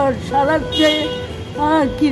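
An elderly woman talking in a high, quavering voice.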